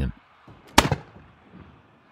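A single gunshot sound effect: one sharp crack about a second in, with a short decaying tail.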